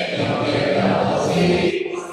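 Recorded anthem played over a hall's loudspeakers: a choir comes in loudly, singing held notes over the orchestra.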